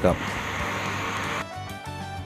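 Sliced onions frying in oil in a pan, stirred with a wooden spatula, a steady sizzle that cuts off abruptly about one and a half seconds in. Background music follows.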